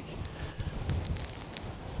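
Wind buffeting the phone's microphone: an uneven low rumble with no distinct events.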